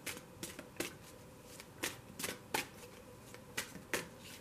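Tarot cards being shuffled by hand: a string of short, irregular card snaps and flicks.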